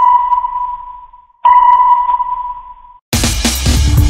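Two sonar-style pings of a radar sound effect, each a clear single tone that fades away, the second about one and a half seconds in. Electronic music with a beat starts about three seconds in.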